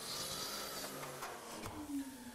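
Faint rubbing and handling sounds of an oak board being positioned on a miter saw's table, with the saw not running.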